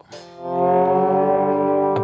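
Electric lap steel guitar (Gretsch G5700 Electromatic) sounding a sustained chord that swells in over the first half second, as from a volume pedal, then rings steadily. It is played through an amp modeller set to a clean Fender Blues Deluxe profile with a little Tube Screamer overdrive, delay and a lot of reverb.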